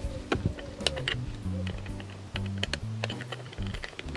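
Irregular small clicks and taps of hands working at a figurine's base while its wires are taken off, over background music with a low bass line.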